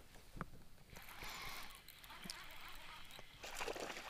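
Faint splashing and sloshing of water as a small hooked smallmouth bass is reeled in to the surface, with a few light clicks.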